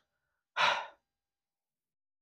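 A man's single audible exhale, a short sigh of about half a second, starting about half a second in.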